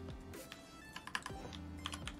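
Computer keyboard typing a search: scattered key clicks, quicker in the second half, over faint background music.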